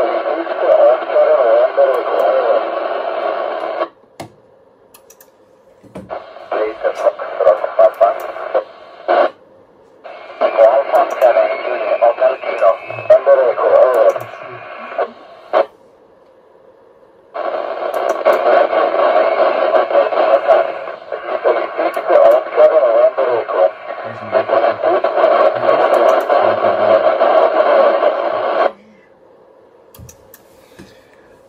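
Amateur radio voice transmissions relayed through the International Space Station's FM repeater, heard over the receiver as thin, noisy, band-limited speech. Four transmissions switch on and off abruptly as stations key up and drop off, with short quiet gaps between them.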